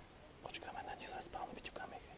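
A person whispering a few hushed words, starting about half a second in.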